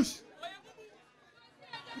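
A man's voice over a microphone breaks off at the start, then a pause filled only by faint chatter from the people around, before he speaks again at the very end.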